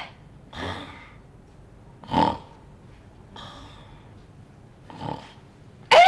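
A man snoring in his sleep: four short, noisy snores about a second and a half apart. A loud, wavering high-pitched sound starts right at the end.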